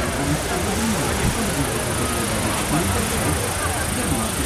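Babble of many people talking at once, with no single voice standing out, over a steady high hiss.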